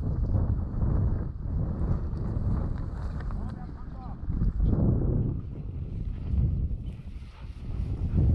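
Wind buffeting the microphone of a body-worn GoPro action camera, a steady low rumble that swells and dips unevenly, mixed with the rustle and knock of walking over dry grass and rocks.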